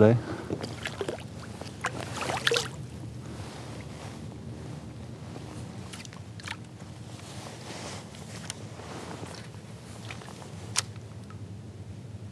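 Water splashing and dripping at the side of a kayak as a smallmouth bass is released by hand. This is followed by a faint steady wash of water and wind with scattered light knocks, and one sharper click near the end.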